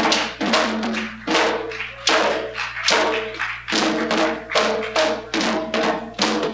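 Live hand drums playing a driving dance rhythm, with a strong stroke about every 0.8 seconds and lighter hits between.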